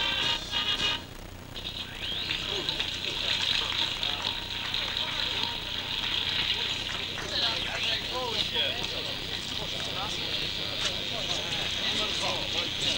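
Music stops about a second in. After it comes the indistinct chatter of an outdoor crowd over a steady hiss, with scattered voices growing busier in the second half.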